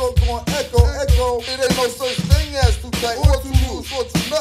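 Hip hop track playing: rapped vocals over a beat with a heavy, repeating bass kick.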